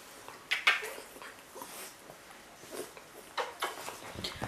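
Small dog licking and snuffling at a person's face up close: a handful of short, soft sniffs and licks scattered through the quiet.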